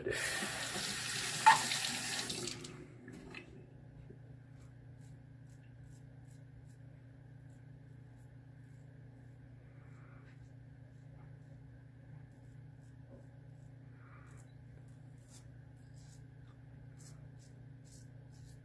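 Water running from a sink tap for about two and a half seconds, then shut off. After that only a faint steady hum remains.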